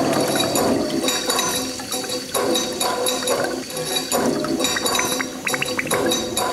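Water rushing and splashing, swelling and easing about once a second, with steady ringing tones and scattered clinks running under it.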